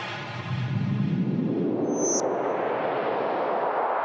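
Logo-animation sound effect: a sustained rushing whoosh that grows brighter toward the end, with a brief high ping about two seconds in.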